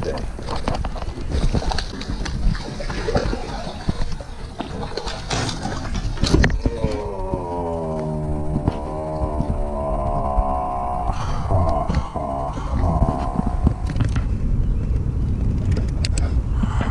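A person's voice without clear words, with one long wavering hum in the middle, over a steady low rumble.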